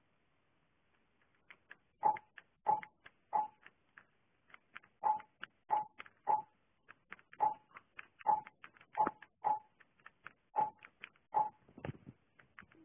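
Buttons being pressed on a karaoke machine's remote, each firmer press answered by a short beep, in irregular runs as song numbers are keyed in to reserve several songs.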